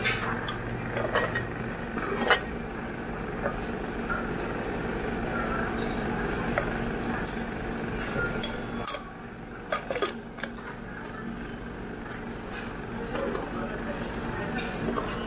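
Metal spoon clinking against a glass condiment jar and a ceramic bowl while scooping ground peanut powder, a few sharp clinks scattered through. Behind it, a steady hum and the chatter of a busy restaurant.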